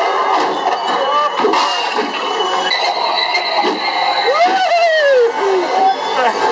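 Haunted-house attraction audio: a dense mix of voices and effects. About four and a half seconds in, a long cry rises and then falls.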